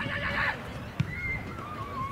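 Distant shouted calls from players across an open football field, with one sharp thud about halfway through.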